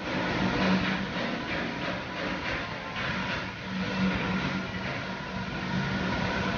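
NTC five-axis 3D laser cutting machine cutting 3 mm sheet metal: a steady, dense hiss of the cut and its spark spray, over a low hum from the machine.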